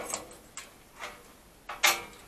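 Iron bar gate being opened by hand: sharp metallic clicks and clanks, four in all, the loudest near the end.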